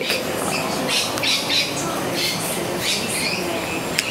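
Birds calling with short calls repeated several times over a steady background rush.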